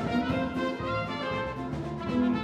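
Small jazz combo playing live: a soprano saxophone solos in quickly changing notes over bass, guitar and drums.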